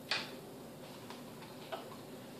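A few faint, light clicks from handling a LiPo battery and its wire leads in a foam glider's fuselage, after one short hiss at the start.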